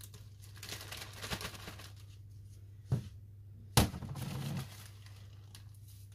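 Plastic bag of dried rose petals crinkling as it is worked open, then a sharp tick and, about a second later, a louder knock with a short rustle after it.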